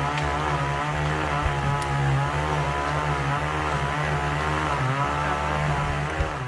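A small engine running steadily at a constant speed, its pitch wavering slightly.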